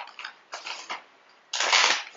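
A bag rustling as hands rummage through it for the next item: a sharp click at the start, short rustles about half a second in, then a louder, longer rustle from about a second and a half.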